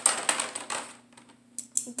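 Beyblade spinning tops and their burst-off parts clattering and rattling against each other and the plastic stadium floor after a burst finish. The rapid clicking thins out and fades within about a second, and one last small click comes near the end.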